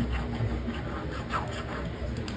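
Faint scraping of a hand file drawn along a ring's bezel, filing the bezel flat and blunt before stone setting.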